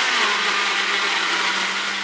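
Countertop blender with a glass jug running steadily, pureeing strawberries and sugar into a paste, a constant motor hum under the whirr of the blades.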